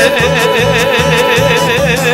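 Izvorna folk music: a long held note with a wide, even vibrato over a steady rhythmic string accompaniment.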